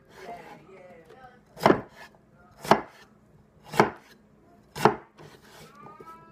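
A heavy 8-inch, quarter-inch-thick fixed-blade knife chopping red potatoes on a wooden cutting board. There are four sharp chops about a second apart, the blade striking the board with each cut.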